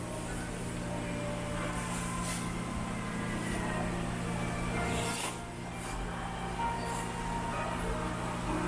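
Noodles slurped from a bowl in a few short hissing sucks, the clearest about five seconds in, over a steady low mechanical hum.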